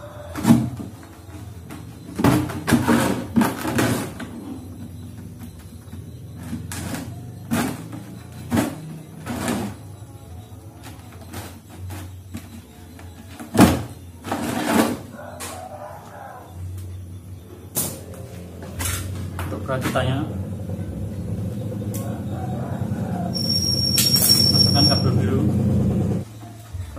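Irregular sharp knocks and clicks of a hand tool working the rim of a plastic container. A low rushing noise builds over the last few seconds and is loudest near the end.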